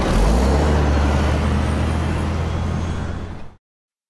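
Coach bus driving past: a steady low engine drone with road and wind noise, which fades and then cuts off abruptly a little over three seconds in.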